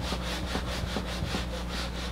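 Whiteboard eraser rubbing back and forth across a whiteboard in quick, even strokes, about five a second.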